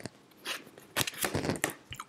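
Tarot cards being handled and dealt onto a table: a few short, light clicks and slides of card, one about half a second in and a small cluster in the second half.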